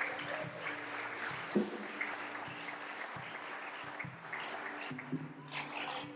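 A soft sustained keyboard chord held under a steady hiss of congregation noise, with a few faint knocks.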